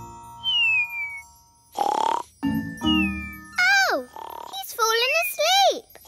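Cartoon pet ladybird snoring in its sleep: noisy snorts, two of them followed by a falling whistle, then a run of grunting snuffles, over soft background music.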